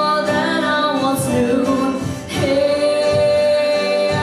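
A woman singing live into a microphone with instrumental backing; a little past halfway the voice breaks briefly, then holds one long note.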